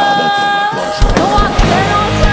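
Live progressive metal band: the bass and drums drop out under one long sung note by a female singer, then the full band crashes back in about a second in.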